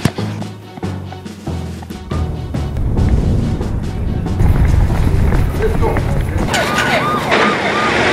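A low rumble builds through the middle. Then, near the end, a police car siren starts yelping in quick, evenly repeated rises and falls in pitch.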